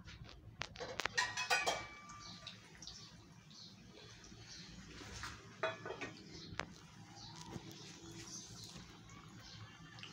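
Sweet flour-and-semolina cakes frying in hot ghee in a frying pan, a faint crackling sizzle. A quick run of sharp metallic clinks against the pan comes about one to two seconds in, and a few more knocks come around five to six and a half seconds.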